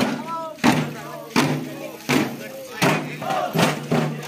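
A group of men chanting and shouting together over a steady beat of sharp, ringing percussion strikes, about one every 0.7 seconds.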